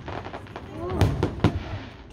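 Aerial fireworks shells bursting overhead: a faint bang near the start, then two loud bangs about half a second apart around a second in.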